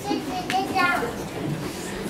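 People chatting in a room, with a child's high voice calling out for about half a second partway through.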